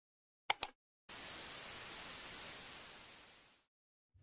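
Title-card sound effect: two sharp clicks in quick succession, then a steady static-like hiss that fades away over about two seconds.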